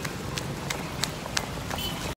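Running footsteps on a wet street, about three strides a second, each footfall a sharp slap, over a low rumble of the handheld camera jostling.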